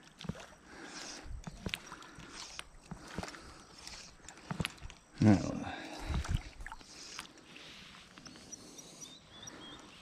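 Faint sloshing and handling noises from a hand working at the surface of shallow creek water, with a short vocal sound from the angler about five seconds in.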